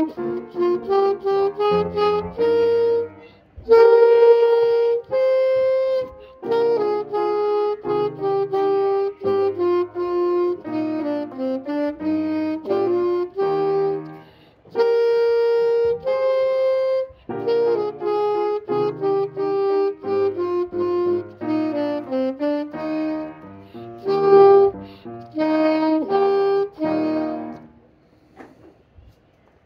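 Alto saxophone playing a simple exercise melody as a string of separate notes, in phrases broken by short pauses for breath. It stops just before the end.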